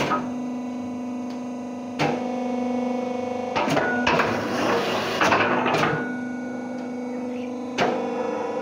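Rotary fly ash brick press running: a steady machine hum from its motor and hydraulic pump, with sharp clunks every second or two as the turntable indexes and the press cycles.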